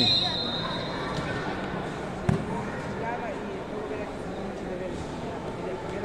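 An ecuavoley ball struck once with a sharp smack about two seconds in, over faint voices of players and spectators in the gymnasium.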